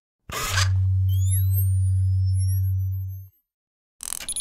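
Synthesised logo sting: a sudden hit, then a deep steady bass tone lasting about three seconds under high rising sweeps and falling glides, cutting off abruptly.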